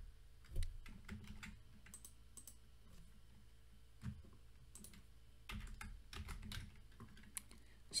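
Faint typing on a computer keyboard: scattered clusters of key clicks, busiest near the start and again in the second half, as code is edited.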